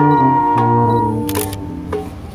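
A small brass band of trumpet, trombone, saxophones and drum holding a chord whose notes drop away over about the second half, leaving only a low note. A brief sharp noise and a click come near the end.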